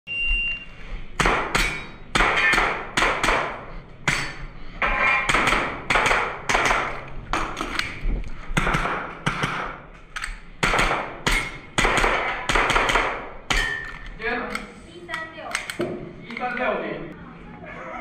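A short electronic shot-timer beep, then an airsoft pistol fired in quick strings of about two shots a second for some twelve seconds. Each shot is a sharp crack with a brief echo.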